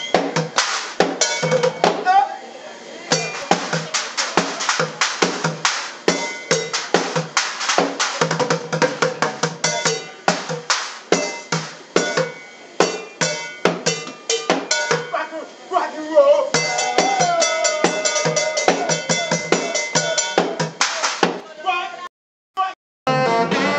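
Bucket drumming: drumsticks beating upturned plastic buckets, a pot and metal pans in a fast, steady rhythm, the metal ringing over the hollow plastic hits. The beat thins out briefly about two seconds in, then picks up again.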